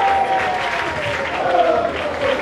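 Crowd of supporters applauding, a steady patter of hand clapping with voices calling out over it.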